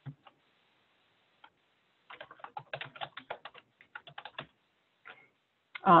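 Typing on a computer keyboard: a quick run of keystrokes lasting about two and a half seconds, starting about two seconds in, with one more click near the end.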